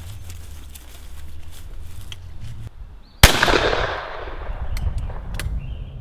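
A single shot from a Baikal IJ-58MA side-by-side shotgun's left barrel about three seconds in, its report echoing away over the next couple of seconds. Before it, footsteps and rumble as people walk through grass.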